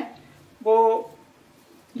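A woman's voice holding one drawn-out word, "vo", about half a second in. The rest is quiet room tone.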